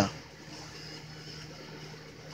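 Quiet, steady background hum and hiss between spoken remarks: room tone.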